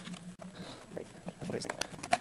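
Cardboard box and plastic wrapping being handled, with quick rustles and sharp clicks in the second half.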